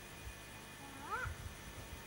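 A short animal call about a second in, one brief cry rising in pitch, with a few low thumps around it.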